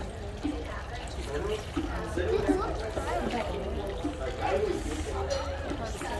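Children's voices chattering in the background, over a steady low rumble, while water trickles from a hand-pumped hose sprinkler onto wet sediment.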